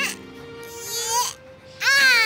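Background music with a held note under voice-like pitch glides: a short rising one about a second in, then a louder swoop near the end that rises and falls away.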